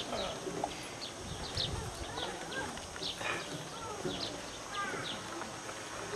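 Small birds chirping again and again in short, falling calls, over a faint murmur of people and a few footsteps on a wooden stage.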